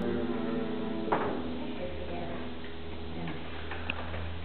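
A guitar chord left ringing and fading out, with a single sharp knock about a second in, over a steady low hum.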